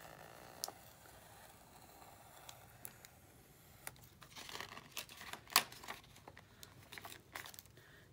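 A pen-style craft knife with a tiny blade scoring and cutting a book page, with paper rustling as the page is handled. Scattered small clicks and scratches run through it, with a busier stretch of scratching in the middle and the sharpest click about five and a half seconds in.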